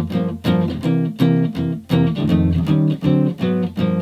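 1977 Gibson L5 archtop guitar played clean, comping short chord stabs about twice a second. It moves through a chromatic jazz-blues last line with tritone substitutions: F7, E♭7, D7, A♭m7, Gm7, D♭7, C7, G♭7.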